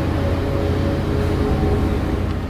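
Steady room background noise: a low hum under an even hiss, with no change through the moment.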